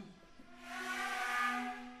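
Flute and clarinet playing with extended technique: a low note is held steadily while a breathy hiss of blown air swells up and fades away over about a second and a half.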